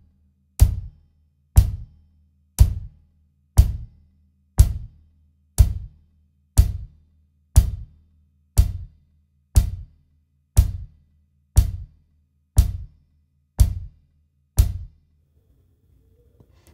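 Meinl hi-hat struck with a stick together with a Dixon kit's bass drum, in slow, even quarter notes at about one beat a second. Fifteen matched hits, the last one about a second and a half before the end.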